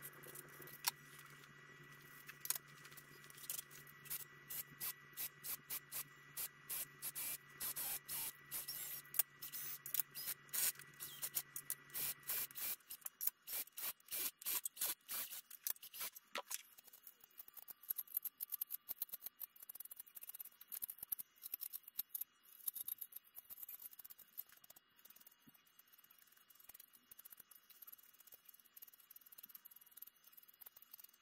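Quick run of clicks and scrapes from hand tools working aluminium aircraft rudder parts (deburring and drilling), sped up. A steady hum runs under it and stops about halfway through.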